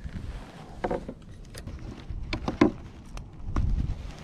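Scattered knocks, clicks and rustling of handling on a kayak as a netted summer flounder is taken out of the landing net with plastic fish grips, with low wind rumble on the microphone.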